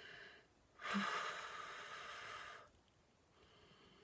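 A woman's heavy breathing: one long, audible exhale like a sigh, starting about a second in and lasting about two seconds, with fainter breaths before and after. It comes from someone overheated and slightly dizzy after twenty minutes in a closed hot car.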